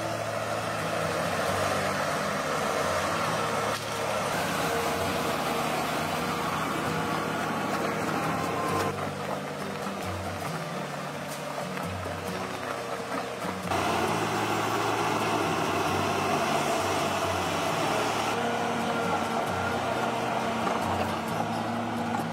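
A loaded forestry forwarder's diesel engine working steadily as the machine drives through deep mud, with background music under it. The sound changes abruptly several times at the cuts between shots.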